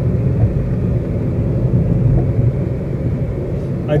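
Steady low rumble of a car driving along a highway, road and engine noise heard from inside the cabin.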